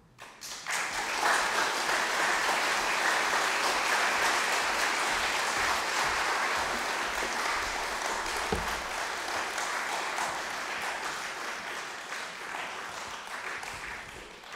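Audience applauding in a concert hall, starting suddenly and dying away near the end, with a single low thump about eight and a half seconds in.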